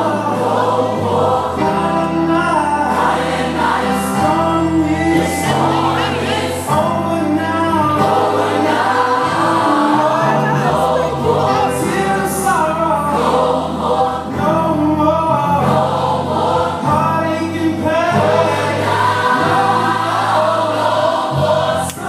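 Gospel music: a choir singing over instrumental backing, loud and continuous.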